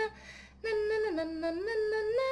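A woman humming a simple tune in long held notes that step down in pitch and climb back up, with a short break for breath just after the start.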